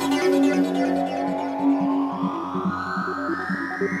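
Goa trance music in a breakdown: the kick drum drops out at the start, leaving synthesizers. They play a held low note and quick sequenced notes under a sweep that rises steadily in pitch.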